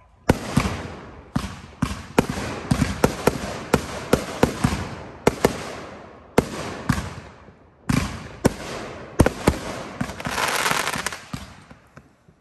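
Consumer aerial fireworks bursting overhead in quick succession: a rapid string of sharp bangs, each trailing off in a fading echo. About ten seconds in there is a louder stretch of hiss.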